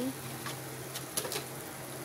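Squid pieces frying in hot oil in a pan with sambal sauce, a low steady sizzle with a few sharp pops of spattering oil about a second in.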